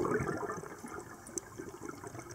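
Scuba diver's exhaled breath bursting out of the regulator as a rush of bubbles underwater, loudest at the start and fading away within about a second into light bubbling. A single sharp click sounds about halfway through.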